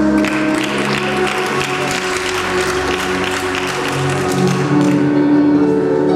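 Routine music playing, with audience clapping over it that dies away about five seconds in. The clapping greets the trio's held balance pyramid in an acrobatic gymnastics routine.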